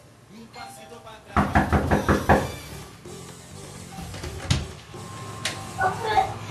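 Knocking on a wooden front door: a quick run of about five knocks a little over a second in, then a single click near the end as the door is opened.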